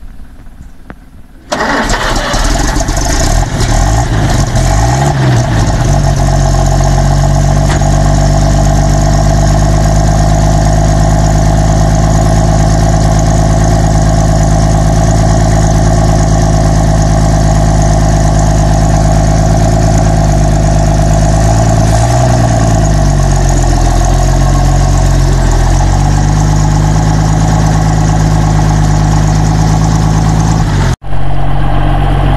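1948 Bedford truck's six-cylinder engine, cutting in suddenly about a second and a half in and then running loud and steady as the truck is driven. Its pitch shifts briefly about five seconds in and again for a few seconds after twenty-two seconds. The carburettor mixture is set rich, by the owner's account.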